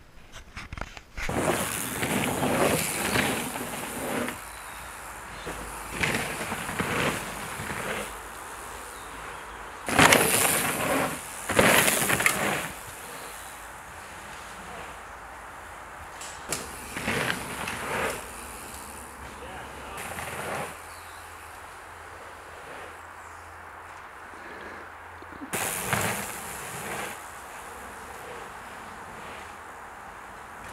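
Mountain bike tyres rolling and skidding over a loose dirt trail in several separate passes, each a burst of rushing, gritty noise. The loudest passes come about ten and twelve seconds in.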